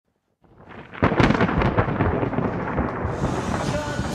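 Thunder rumbling out of silence and breaking into a loud crack about a second in, followed by uneven rolling cracks, with a hiss like rain building near the end.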